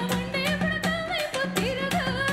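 Indian song with a woman singing a wavering, ornamented melody into a microphone over a quick percussion beat and a low held note.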